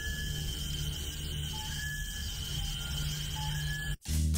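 Background music: a steady high tone held over a pulsing low bass, with a few short, sparse notes above it. It cuts off abruptly at the end.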